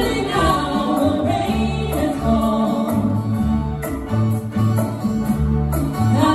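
Live band playing a reggae-tinged soul song: electric bass, acoustic guitar, keyboards and drums under a female lead vocal with a second woman singing backing.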